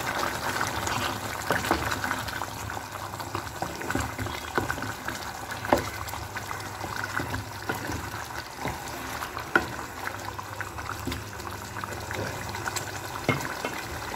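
Thick chicken curry gravy bubbling as it simmers in a kadai, a steady bubbling with scattered small pops. A few light knocks of a ladle against the pan come in as the gravy is stirred.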